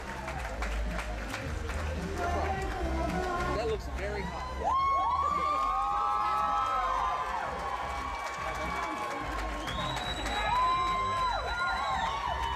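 Music with a heavy bass and long held, sung notes, with crowd noise and some cheering.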